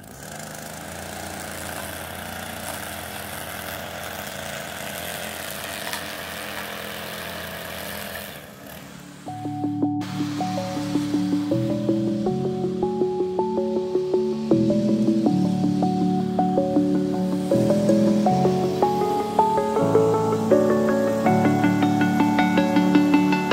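A backpack leaf blower running steadily for about eight seconds, then cut off. Background music with a melody of short notes takes over and carries on, louder than the blower.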